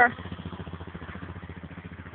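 An engine idling steadily, a low even pulsing hum.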